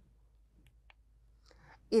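Near silence in a quiet room with two faint short clicks around the middle, then a woman starts speaking just before the end.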